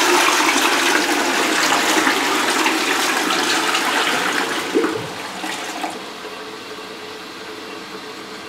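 Toilet flushing from an older single-push-button cistern: water rushes loudly into the bowl and drains away, fading after about five seconds. It settles into a quieter steady hiss as the cistern refills through its fill valve.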